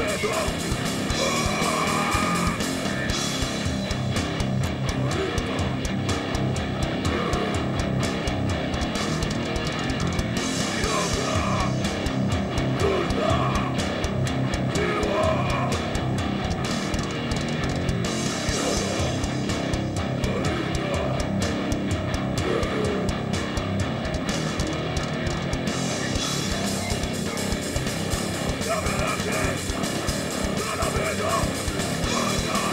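Live rock band playing at full volume: electric guitar, electric bass guitar and a drum kit, running steadily without a break.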